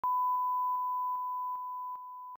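Steady 1 kHz line-up test tone of the kind that accompanies colour bars, a single pure beep. It gets quieter in small steps about every 0.4 seconds, with a faint click at each step.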